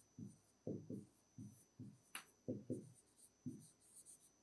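Writing on a board: a string of short, faint pen strokes, about two to three a second, with one sharp tap about two seconds in.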